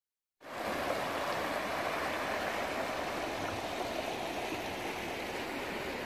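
Shallow river rushing steadily over a cobble riffle. It comes in after a brief silence at the very start.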